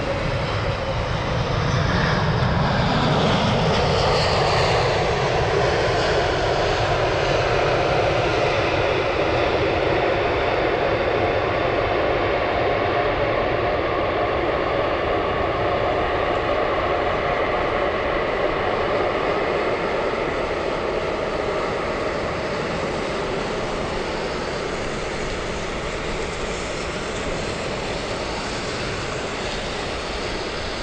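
Airbus A380's four jet engines (Engine Alliance GP7200s) at take-off power as the aircraft passes, lifts off and climbs away. Their whine falls in pitch over the first few seconds as it goes by, then settles into a steady jet rumble that eases slightly toward the end.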